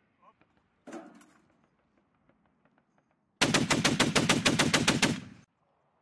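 M2 .50-caliber heavy machine gun firing one burst just under two seconds long, about nine rounds a second. About a second in there is a single fainter shot.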